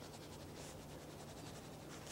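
Faint scratching of a pen on paper, in quick, even strokes, over a low steady hum.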